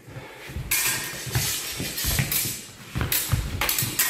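Fencers' feet thudding and scuffing on a sports-hall floor during a rapier-and-dagger sparring exchange, with a steady rustling noise and a few sharp clicks near the end.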